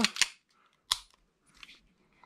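A single sharp metallic click from a 1911-style pistol being handled in the hands, followed by a few faint handling sounds.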